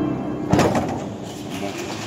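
A church pipe organ's final chord released, its pitched sound dying away in the building's reverberation. About half a second in there is a short, sharp knock.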